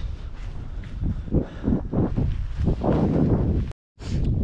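Wind buffeting the camera microphone: a steady low rumble with irregular louder gusts. The sound cuts out completely for a moment just before the end.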